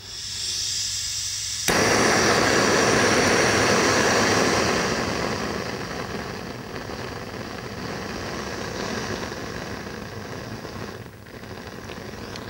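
Hand-held gas blowtorch: gas hissing from the nozzle, then lighting with a sudden pop about two seconds in and burning with a loud, steady rush of flame that gradually eases to a lower level.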